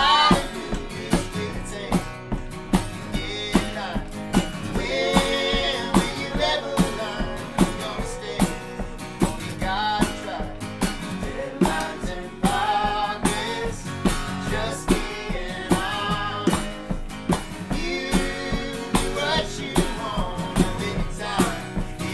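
A small acoustic band plays a country-rock song: acoustic guitars strummed, a voice singing, and bongos played by hand in a steady beat, about two hits a second.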